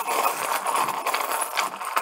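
A handful of small charms rattling and clinking together as they are shaken, a dense run of tiny clicks.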